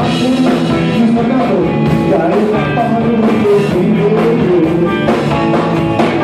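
Live garage rock band playing loudly and steadily: electric guitar, bass, drum kit and combo organ, with a singer.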